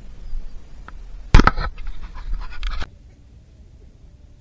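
Close handling noise: a sharp knock about a second and a half in, then a second or so of scraping and rustling, which cuts off abruptly into a quiet background.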